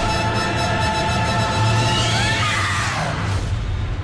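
Loud orchestral horror film score: a held chord over a low rumble, with a falling sweep of pitch about two seconds in that fades toward the end.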